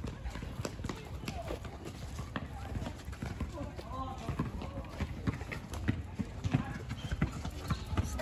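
Footsteps and irregular clicking of someone walking over dry ground and pavement, with faint distant voices in the background.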